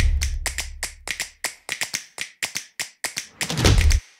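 A title-card sound effect: a rapid, irregular run of sharp clicks and taps, about five a second, with a low swelling rumble at the start and again near the end before it cuts off.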